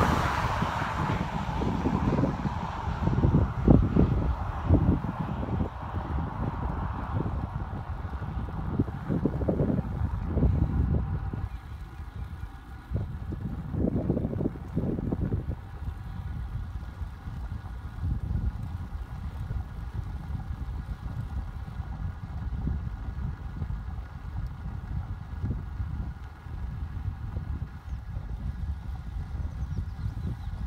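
Wind buffeting a phone microphone while riding a road bicycle: an uneven low rumble, louder in the first dozen seconds and easing off after that, with a faint steady hum behind it in the second half.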